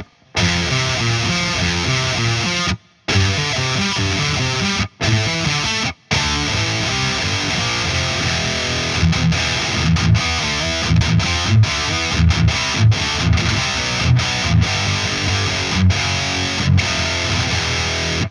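ESP LTD M-1000HT electric guitar played through heavy distortion: a riff of power chords, the chords broken off in short full stops during the first six seconds. From about nine seconds in it turns to a quicker, choppy chugging of short hits and gaps.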